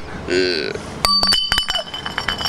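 A man laughs briefly, then about a second in glass clinks several times in quick succession, the strikes leaving ringing tones. The glass is likely beer bottles knocking together.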